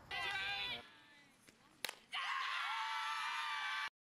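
Voices yelling on a softball field: a short shout, then a single sharp crack about halfway through, then several voices cheering and yelling together for nearly two seconds, cut off abruptly just before the end.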